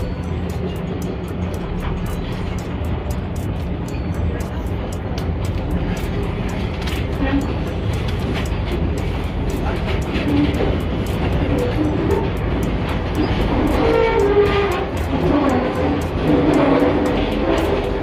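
Metro-station escalator running with a steady low rumble, with people's voices in the station coming in during the second half and background music over it.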